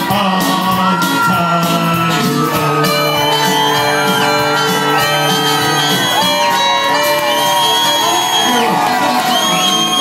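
Live band playing the final bars of an Irish ballad with long held notes, while the crowd whoops and shouts over it from about three seconds in.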